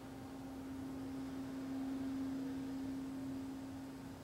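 A steady low hum-like tone that swells to its loudest about two seconds in and eases back near the end, over faint room hiss.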